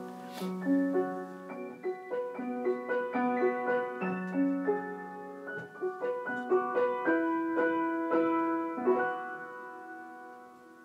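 Solo piano music: a flowing melody of single notes over held lower notes, getting quieter near the end.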